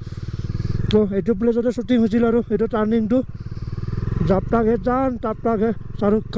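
Motorcycle engine running as the bike rides along, getting louder twice as it picks up speed, with a man talking over it for most of the time.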